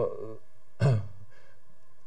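A man's voice in a pause: a brief hesitant 'uh', then a short sigh a little under a second in, over a low steady room background.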